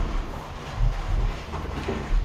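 Cardboard refrigerator box rubbing and scraping as it is lifted up off the plastic-wrapped fridge, with low thuds and rumbling from the handling, heaviest about a second in.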